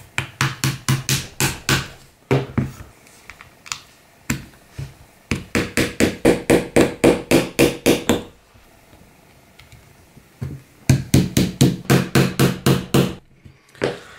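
Quick, even taps, about five a second, in three runs with short pauses between, as the pins of a plastic airsoft electric pistol frame are tapped home.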